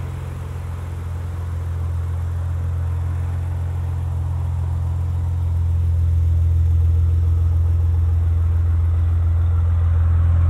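Maserati Levante GranSport's twin-turbo V6 idling steadily in Sport mode with a deep low exhaust hum, heard from outside the car. It gets louder about halfway through as the rear exhaust tips come close.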